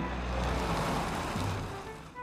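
A soft whoosh of a book page turning, swelling and then fading away over about two seconds.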